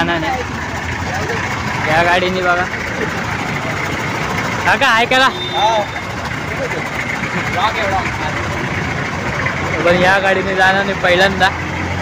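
A motor vehicle engine idling steadily, with men's voices calling out several times over it.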